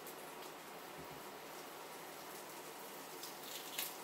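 Faint papery rustling and a few small crackles as the dry skin is peeled off a red onion by hand, over a low steady hiss.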